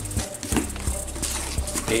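A few light, irregular knocks and taps from a cardboard box being handled, over a steady low hum.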